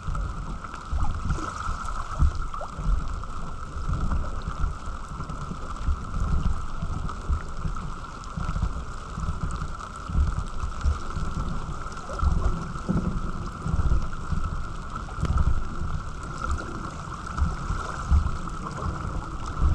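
Wind buffeting the camera microphone in irregular low gusts, with water rushing and gurgling along a sailing dinghy's hull, over a steady high whine.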